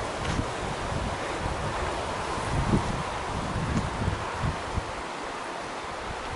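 Wind buffeting a handheld camera's microphone: a steady rushing hiss with irregular low rumbles that ease off near the end.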